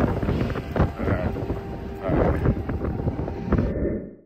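Heavy wind buffeting the microphone over a Cat 259D skid steer's diesel engine running close by.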